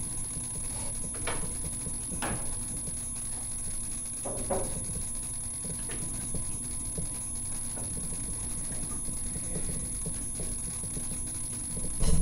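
Room tone: a steady low hum with a thin high whine, broken by a few faint clicks about one, two and four seconds in.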